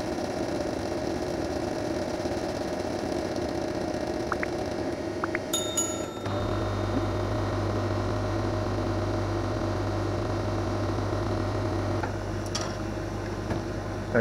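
A 50 W CO2 laser cutter running a cut-and-engrave job on MDF: a steady machine hum with a few faint clicks. A deeper low hum comes in about six seconds in.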